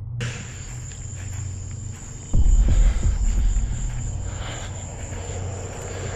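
A phone's night recording with a steady high-pitched whine, over a low background-music drone. About two and a half seconds in comes a loud low rumbling thump, like wind or handling noise on the phone's microphone.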